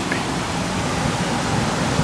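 Heavy rain falling steadily, an even hiss heard through an open window.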